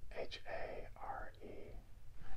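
A man whispering a few words under his breath, quiet and breathy.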